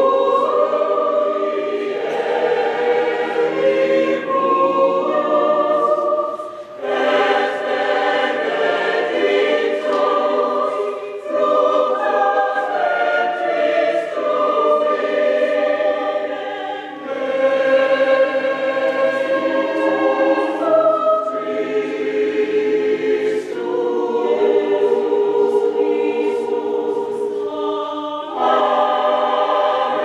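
Large mixed choir singing unaccompanied in several parts, holding sustained chords in long phrases with brief breaks for breath between them.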